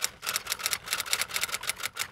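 Intro sound effect of rapid typewriter-like clicking, about nine or ten sharp clicks a second, laid under an animated handwritten logo.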